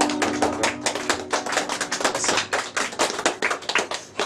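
An acoustic guitar's final chord rings out during the first second or so, while a small audience claps with dense, irregular claps.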